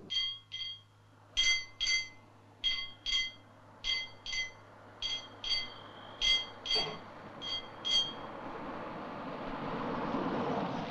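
A high ringing signal sounding in short double tones, about seven pairs at a steady pace, one tone held longer midway. A rising rumble of an approaching vehicle builds over the last couple of seconds.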